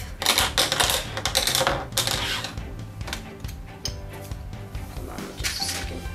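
Small plastic LEGO pieces clattering as a handful is dropped and sorted onto a tabletop: a dense run of clicks for the first two or three seconds, then scattered lighter clicks. Background music plays underneath.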